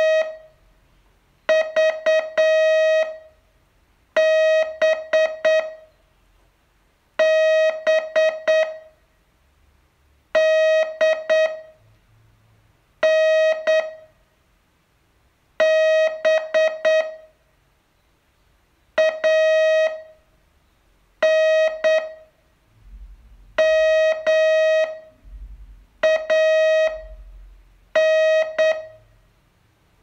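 Morse code on a single steady beep tone, sent as short clusters of dots and dashes, one cluster every two to three seconds with quiet gaps between: a slow-speed code-receiving exercise of about eleven words.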